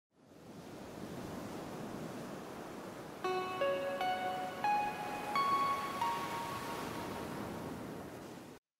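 Intro music sting: a steady rushing noise like surf, then from about three seconds in a short run of about six chime-like notes, mostly rising, the last one ringing on.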